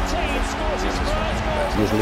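Background music with held notes and a low pulsing beat, under a man's faint speaking voice.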